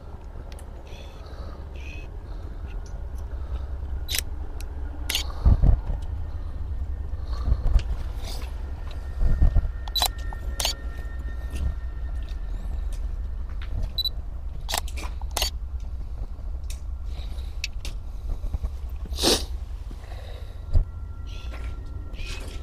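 Hand-held camera and light rig being handled close to the microphone: a steady low rumble with scattered sharp clicks and knocks, and a faint steady high tone near the end.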